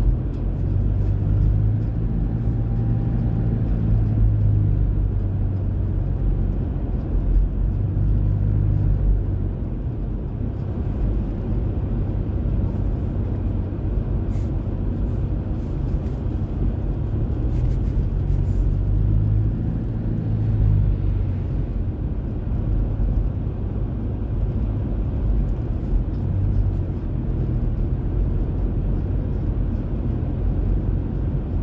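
A car driving, heard from inside the cabin: a steady low rumble of engine and road noise. A low hum swells for a few seconds near the start and again past the middle.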